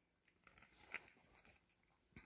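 Near silence: room tone, with one faint short tick about a second in.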